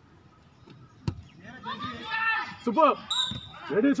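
A football kicked on artificial turf: one sharp thud about a second in, followed by shouting voices.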